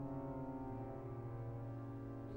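Pipe organ holding a quiet, steady low chord, with its pitch shifting slightly right at the start, under a choral piece.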